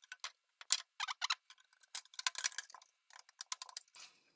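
A scatter of light, irregular plastic clicks and taps as a PC case's metal front mesh is pressed and fitted back into its plastic front-panel frame.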